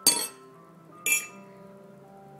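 A metal spoon clinking against a glass mug twice, about a second apart, each strike ringing briefly.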